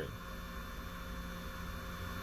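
Steady low hum with an even hiss: the background noise of a car's cabin, with no other event.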